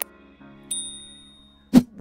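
Sound effects of a subscribe-button animation: a click, then a bright bell ding that rings for about a second over a soft held music chord. A short, sharp hit near the end is the loudest sound.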